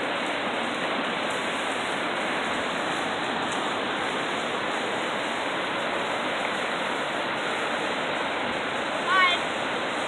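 Steady rushing of white-water rapids on Minnehaha Creek, an even, unbroken water noise. A short voice cuts in briefly near the end.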